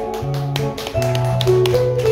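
Live acoustic band playing an instrumental passage: guitar and bass notes over a quick, even tapping rhythm on small hand-played drums, about four or five strikes a second.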